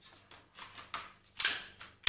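A few light clicks and taps as hands handle and turn over the plastic body of a Xiaomi FIMI A3 drone, the loudest about a second and a half in.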